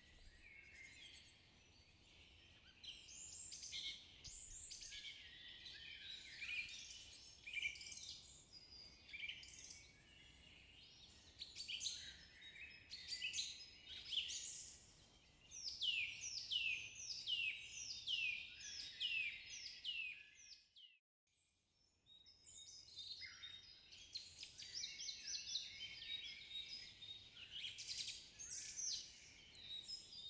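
Quiet forest birdsong ambience: many small birds chirping and singing in quick high notes, many of them falling in pitch. The sound drops out for about a second about two-thirds of the way through.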